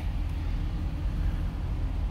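Chevrolet Silverado pickup's engine idling, a steady low rumble heard from inside the cab.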